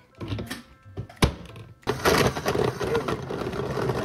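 A sharp click just over a second in, then a countertop blender starts suddenly about two seconds in and runs steadily, blending chia pudding.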